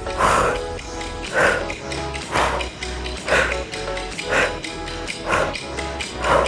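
Sharp, forceful exhalations, about one a second, in time with each leg extension of bicycle crunches, over background workout music with a steady beat.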